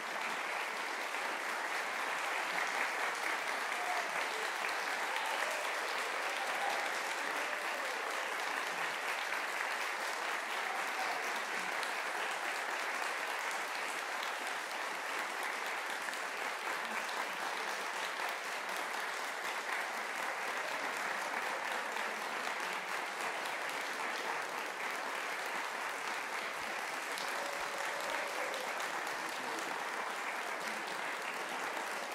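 Audience applauding steadily, the clapping slightly louder in the first few seconds.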